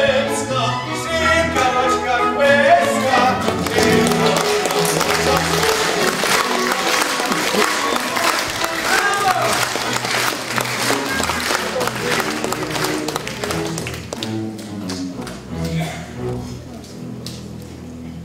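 Chamber orchestra playing on after a sung number, with audience applause over it that dies away in the second half.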